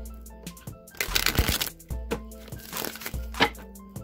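A tarot deck riffle-shuffled by hand: the two halves flutter together in a burst of rapid card snaps about a second in, followed by scattered taps and clicks as the deck is handled and squared. Soft background music plays underneath.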